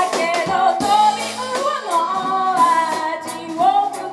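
A woman singing a slow pop ballad with a live band: held, wavering sung notes over drums with cymbals, electric bass, electric guitar and keyboard.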